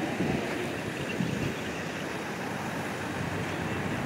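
A pause in the speech, filled by a steady, even background noise of an open-air venue with no distinct event.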